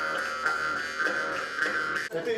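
Several Yakut khomus (jaw harps) played together: a steady buzzing drone with a bright overtone melody shifting above it.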